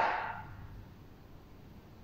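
A woman's spoken word trailing off with reverberation in a large hall during the first half second, then quiet room tone.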